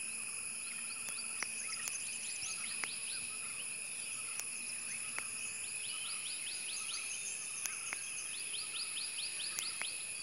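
Tropical forest ambience: a steady, high-pitched insect chorus with several constant tones runs throughout. Over it a bird gives three quick runs of short, sharp repeated notes, the last two after the middle and near the end. A few isolated sharp ticks fall here and there.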